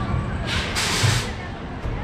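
A short, loud burst of compressed-air hiss from the roller coaster's pneumatic track machinery, with the train held at the switch track, starting about half a second in and lasting just under a second, with a low thump near its end.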